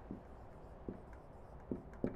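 Dry-erase marker writing on a whiteboard: a few short, faint strokes as letters are drawn.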